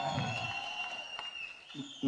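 A faint, high, whistle-like tone held for about a second and a half, sliding slightly down in pitch, heard in a pause between a man's amplified speech.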